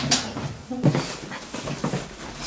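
A man's strained gasps and whimpers during a physical struggle, with irregular scuffling noise.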